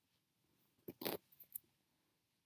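A short, faint cluster of sounds about a second in: a click, a brief rustle, then two more quick clicks.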